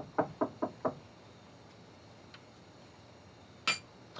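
Knocking on a door: a quick run of about six knocks within the first second. A single sharp click follows near the end.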